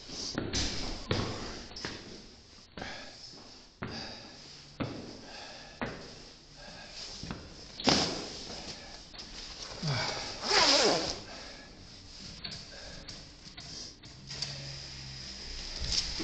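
Footsteps climbing hard indoor stairs, sharp knocks about once a second, with clothing and camera rustle. A short wavering pitched sound comes about ten seconds in.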